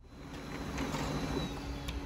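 Brother DCP-L2540DW laser printer feeding and printing a sheet: a steady mechanical whir with a low hum, growing louder over the first second.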